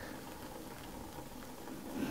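Boiling water poured from an electric kettle into a mug: a faint, steady trickle of a thin stream.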